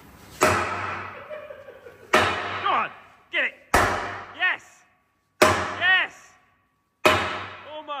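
Sledgehammer striking steel on a tank hull, five heavy blows about a second and a half apart, each ringing briefly: trying to knock a stubborn part loose from the hull.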